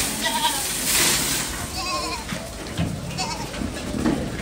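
Aradi goats bleating, three short wavering calls, over a rushing hiss of grain feed poured from a bucket into their trough early on.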